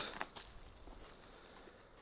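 A few faint scuffs and clicks of footsteps on asphalt in the first half-second, then near quiet.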